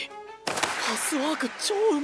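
A character's voice from the subtitled anime speaking a line of dialogue over background music, starting about half a second in.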